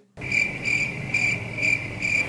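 Crickets chirping, the stock sound effect for an awkward silence: a high chirp pulsing about twice a second, cut in suddenly after a brief dead gap.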